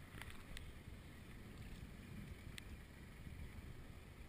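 Faint, uneven wind rumble on an action camera's microphone beside water, with a few light clicks.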